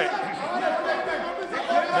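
Indistinct overlapping voices talking in a large hall, with one man starting to speak near the end.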